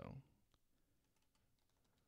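Faint keystrokes on a computer keyboard: a few scattered soft clicks in near silence.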